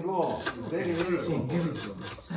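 Manual tile cutter's scoring wheel rasping across a tile as the handle is pushed along the rail, a scratchy, crackling sound in quick repeated strokes.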